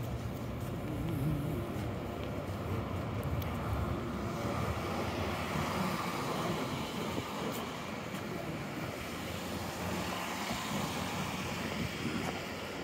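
City street traffic: a steady noise of cars driving by, swelling and easing gently.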